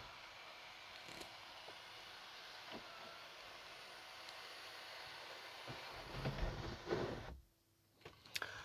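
Faint steady hiss of quiet room tone inside a car cabin, with a few light handling bumps near the end.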